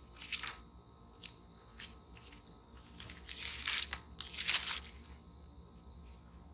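Faint paper rustling and page-turning, a few light clicks and short crackly swishes, the two longest about three and four and a half seconds in, as a book's pages are leafed through to find a passage.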